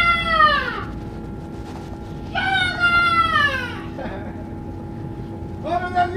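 Long, high-pitched wailing cries, each falling in pitch over about a second and a half: one dies away in the first second, another comes a little after two seconds, and a third starts near the end. Under them runs the steady hum and rumble of the moving bus.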